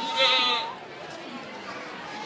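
A goat bleating once, a short quavering bleat near the start, over the chatter of people around the pen.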